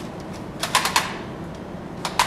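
Plastic toy shotgun clicking as its action is worked, a quick run of about four clicks just under a second in, with no firing sound: its batteries are dead.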